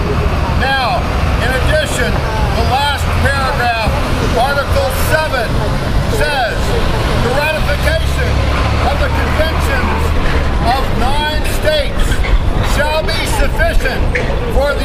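City traffic: a steady low rumble of vehicles, swelling for a few seconds in the middle, under a man's voice speaking.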